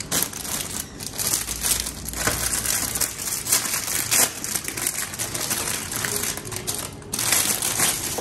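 Clear plastic packaging bag crinkling and rustling as a stainless steel kitchen utensil is pulled out of it, a dense run of crackles throughout.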